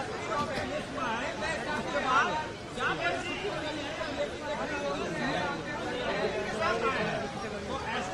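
Several people talking over one another, a run of overlapping chatter with no clear words.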